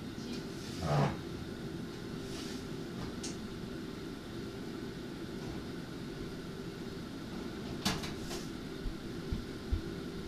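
Steady mechanical hum with a soft hiss from a running kitchen appliance fan, broken by a brief knock about a second in and two sharp clicks near the eight-second mark.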